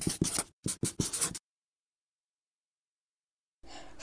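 Marker pen writing on paper: a quick run of short scratching strokes that stops about a second and a half in.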